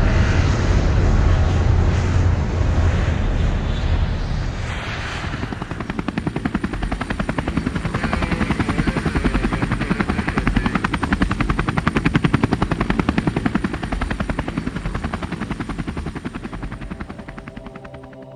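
Aircraft noise heard from on board: a loud low rumble that, about five seconds in, turns into a fast, even pulsing, then fades out near the end.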